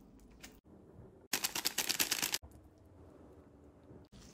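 Rapid, crisp crackling for about a second, from dry, crunchy bhel puri ingredients (puffed rice, sev, puri) being handled and mixed.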